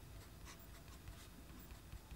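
Faint scratching of a Pilot Custom 74 fountain pen's fine nib writing on paper, in a few soft strokes.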